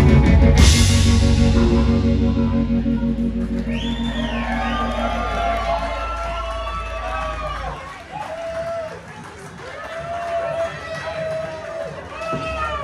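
A rock band's final chord ringing out after a cymbal crash just after the start, fading slowly, with the low bass note cutting off about eight seconds in. The audience cheers and shouts over the fading chord from about four seconds in.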